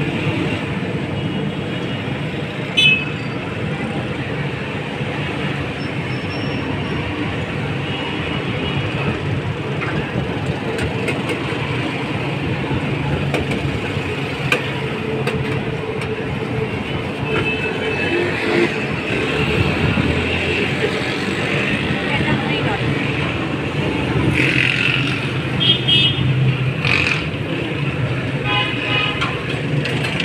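Busy street ambience: a steady din of road traffic with car horns sounding a few times, mostly in the second half, and people's voices in the background.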